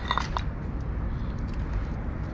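Gloved hand moving stones and brick fragments on a rocky shore: a few light clicks near the start, over a steady low rumble.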